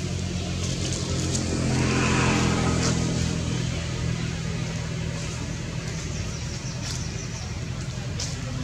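A motor vehicle engine running steadily, swelling louder about two seconds in and then easing off.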